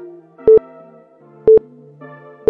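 Two short electronic timer beeps, one second apart, counting down the last seconds of a rest interval, over soft background music.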